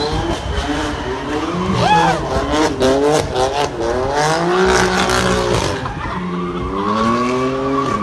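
BMW M3 doing a burnout: its engine is revved up and down again and again while the spinning rear tyres screech.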